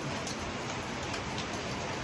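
Steady rain: an even hiss with a few scattered drop ticks.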